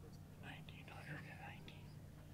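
A faint whispered voice, heard over a low steady hum.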